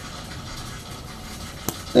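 Quiet room tone with faint hiss, broken once by a single short click near the end.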